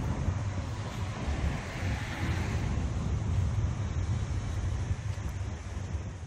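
Wind buffeting a handheld phone's microphone as a low, fluttering rumble, with steady road traffic noise behind it.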